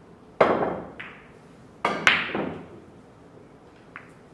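A pool shot: the cue tip strikes the cue ball with a sharp knock, a lighter knock follows about half a second later, and two more sharp knocks come close together near the middle as the ball hits the cushions, each trailing off as the ball rolls on the cloth.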